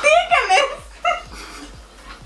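High-pitched voices exclaiming or squealing through the first second or so, then trailing off.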